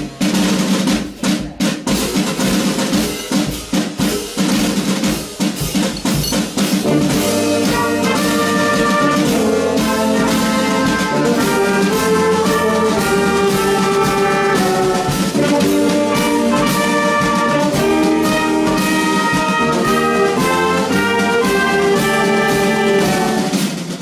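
Marching band of saxophones, trumpets, tuba and marching drum playing. Drum strokes sound over a held low chord for the first six seconds or so, then the full band takes up a moving melody.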